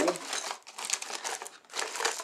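Packaging crinkling and rustling in irregular crackles as a packaged fishing lure is handled and pulled out of a subscription box.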